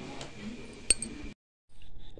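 Faint handling noise around a boxed gas stove, with one sharp clink about a second in. The sound then cuts out completely for a moment and comes back as faint room noise.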